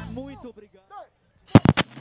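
The band's music stops and a few faint sliding vocal calls die away, then after a short silence a quick run of four or five loud drum hits breaks in near the end, starting the next song.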